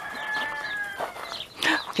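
Chickens calling: one long call held on a steady pitch for about a second, then a few short chirps and a brief louder call near the end.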